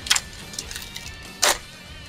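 Foil booster-pack wrapper crinkling and tearing as it is opened, in two short bursts: one right at the start and one about a second and a half in. Faint background music underneath.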